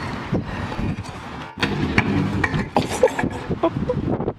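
A scooter crash on a concrete skate park: a scooter and rider hit the ground, with a run of hard clattering knocks from about a second and a half in.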